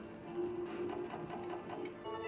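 Merkur slot machine's electronic tune with a quick, even run of ticks as a win is counted up into the points total.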